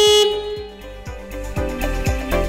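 A single short beep of the Bobcat T86 compact track loader's horn, a loud steady tone that cuts off about a quarter second in, over background music.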